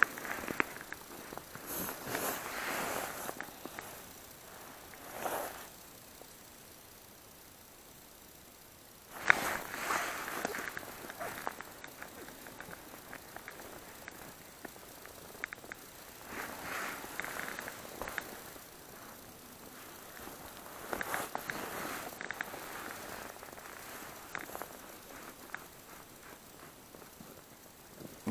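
Fabric rustling in irregular bursts, from a jacket sleeve and tent cloth moving as the ice angler works his line by hand, with one sharp click about nine seconds in.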